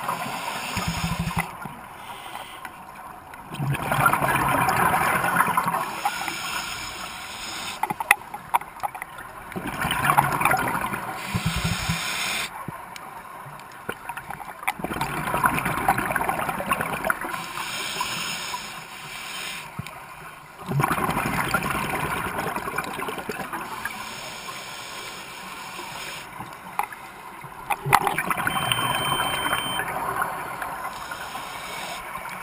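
Scuba regulator breathing heard underwater: gurgling bursts of exhaled bubbles every five to six seconds, with quieter stretches between breaths.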